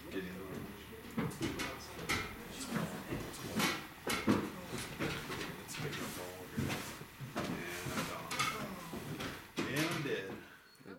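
People talking, with a few short knocks.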